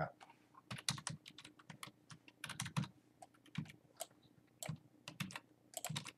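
Computer keyboard typing: short runs of keystrokes with pauses between them.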